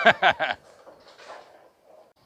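A man laughing and saying a word, then faint, even background noise of the bowling centre.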